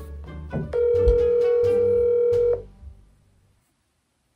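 A steady telephone ringing tone sounds for about two seconds over background music, as an outgoing call rings on the phone's speaker. The music then fades away, leaving silence for the last half second or so.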